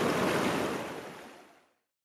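Ocean waves washing, a steady rushing that fades out to silence about a second and a half in.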